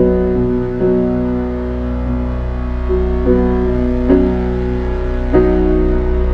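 Slow, soft piano chords on a Steinway, a new chord struck every second or so and left to ring, over a steady low drone from a Behringer DeepMind 12 synthesizer.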